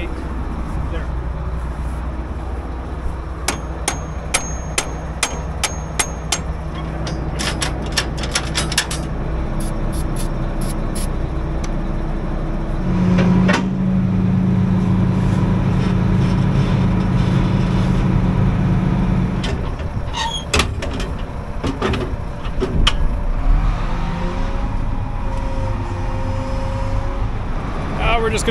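Hammer blows on metal, a dozen or so sharp knocks in quick succession, over a combine engine running steadily. In the middle a louder steady drone joins in for about six seconds.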